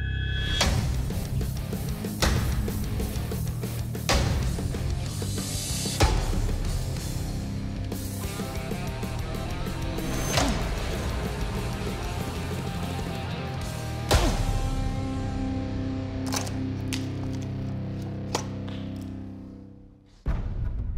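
A broadsword chopping again and again into a rope-wrapped wooden battering-ram log, about half a dozen sharp hits a couple of seconds apart, under dramatic background music that fades out near the end.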